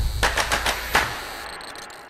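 Tail of a title-card sound effect: a quick run of sharp, gunfire-like hits in the first second, then fading away.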